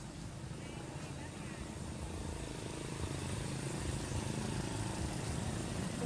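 Low rumble of a passing motor vehicle, slowly growing louder.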